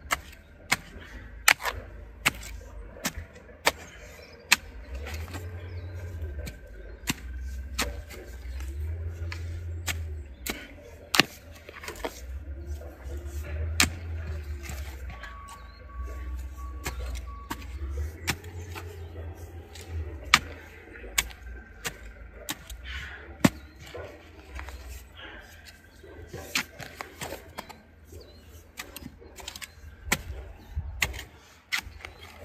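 Spade digging a planting hole in stony clay soil: the steel blade is driven in and chops clods, giving sharp irregular strikes and scrapes, about one or two a second, with soil tipped onto the heap. A low rumble comes and goes underneath.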